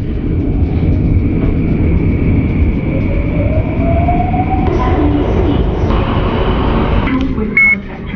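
Interior of a Singapore MRT train carriage while running: a steady, loud rumble of the train on the track with a faint high steady whine over it. Partway through, a whine rises in pitch for a couple of seconds, and a brief high beep sounds near the end.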